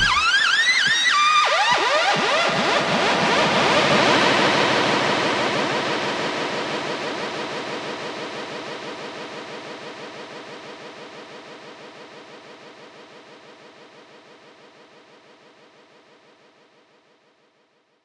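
The ending of an electronic track built on analogue synthesizers: the bass and beat drop out, synth tones sweep up and down for about two seconds, then a noisy, pulsing synth wash fades out steadily to silence just before the end.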